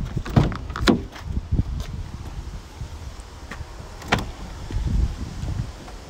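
Rear doors of a Peugeot Boxer van being opened: a few clicks and knocks from the handle and latch in the first second, then one sharp click about four seconds in.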